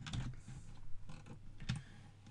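Computer keyboard and mouse clicks: a few separate sharp clicks at irregular intervals. A steady low hum runs underneath.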